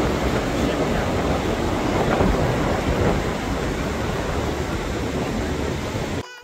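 Wind buffeting the microphone over the steady rush of breaking ocean surf, a continuous loud rumbling noise.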